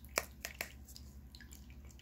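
Small tabletop rock fountain trickling and dripping, with a few sharp drip-like ticks in the first second over a faint low steady hum.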